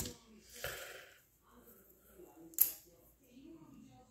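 Handling of coloring supplies at a table: a short rustle near the start and one sharp click about two and a half seconds in.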